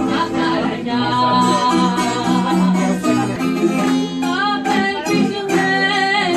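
Live Greek rebetiko music: two bouzoukia and an acoustic guitar playing together, with a woman singing.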